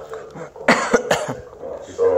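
A person coughing twice in quick succession, about two-thirds of a second in and again just after a second.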